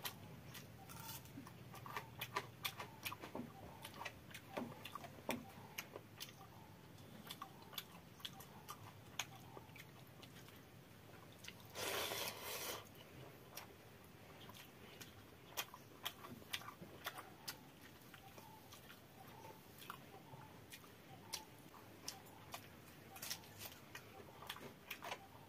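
Close-up eating sounds: a person chewing and smacking on fermented water rice and fried potato bhujia, eaten by hand, with many short clicks and crunches throughout. About halfway there is a louder, longer wet burst as a handful of watery rice goes into the mouth.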